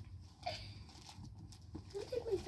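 Quiet room tone: a low steady hum with a few faint clicks and a brief soft sound about half a second in.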